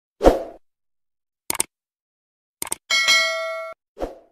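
Sound effects of an animated subscribe button and notification bell: a short loud swoosh at the start, two quick click sounds about a second apart, then a bright bell ding that rings for under a second and cuts off sharply near the end.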